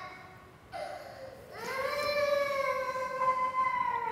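A small child crying out: a short cry under a second in, then one long held wail from about a second and a half in, its pitch sagging slightly.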